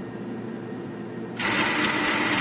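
An ATM cash dispenser whirring as it pays out notes, a sound effect that starts suddenly about one and a half seconds in and holds steady, over a faint hum.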